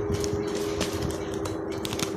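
Faint rustling and scraping as the tied neck of a woven plastic wheat sack is worked open by hand, with a few light clicks, over a steady low hum.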